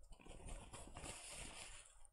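Faint rustle of a paper tissue being handled.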